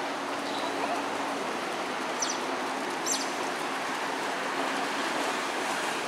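Steady rushing of flowing water, with two short high-pitched chirps about two and three seconds in.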